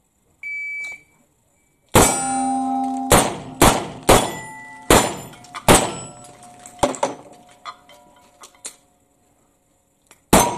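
A shot-timer start beep, then a string of revolver shots, each followed by the clang and ring of a struck steel plate. The shots come about half a second to a second apart, with a few fainter hits near the end.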